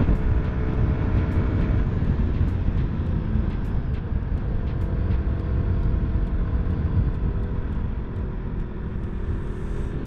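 Motorcycle running steadily at highway speed, heard from the rider's camera with heavy wind rumble on the microphone over the engine.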